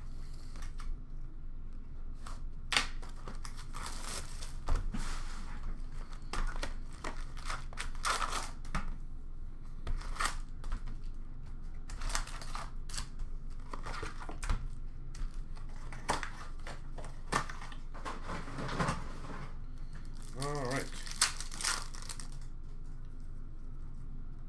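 Hockey card packs being torn open, their wrappers crinkling and rustling in irregular bursts as the cardboard box and packs are handled.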